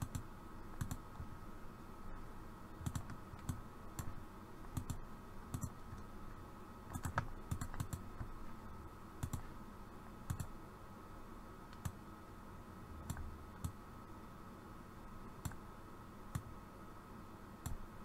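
Computer mouse buttons clicking irregularly, about once a second, as nodes are placed and dragged while tracing a vector path, over a faint steady hum.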